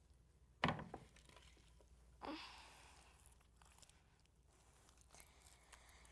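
Quiet hand-handling of soft homemade slime as it is pulled and squeezed, with one sharp knock just over half a second in and a short breathy rush about two seconds in.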